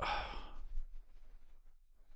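A man's exasperated sigh: one breathy exhale of about half a second at the start, in frustration at a search that won't show his own repository.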